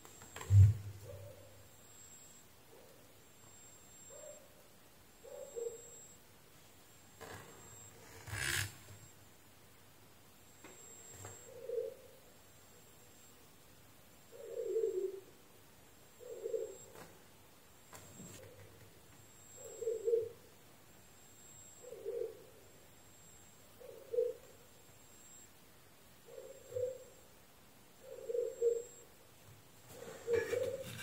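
A dove cooing over and over, low soft hoo notes about every two seconds. A sharp knock about half a second in, louder than the cooing, and a single click at about eight seconds.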